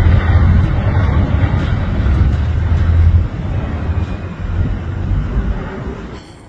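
Beriev Be-200 amphibious water bomber passing low overhead, its twin turbofan engines making a loud, steady rumbling jet noise that eases off about halfway through as it flies away.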